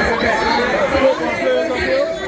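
Many voices at once: a crowd chattering and calling out together, no single voice standing out.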